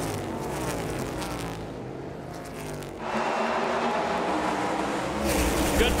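NASCAR Cup stock cars' V8 engines. For the first three seconds the engine note falls in pitch. About three seconds in the sound switches abruptly to a pack of cars running hard, a steady engine drone that swells with a deeper rumble near the end.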